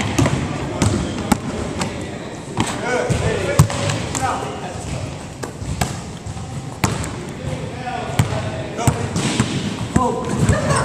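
A basketball being dribbled on a hardwood gym floor, with sharp bounces at irregular intervals.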